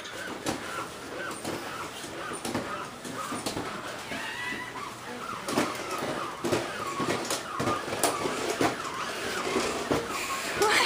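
Scattered light taps and clicks, irregular and a few to a second, with faint voices in the background.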